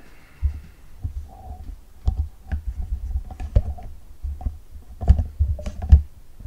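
Handling noise from a camera being moved and repositioned by hand: irregular low bumps and rumble with a few sharp clicks, the loudest knock near the end.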